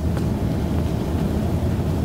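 A steady low rumble of background noise, with no speech over it.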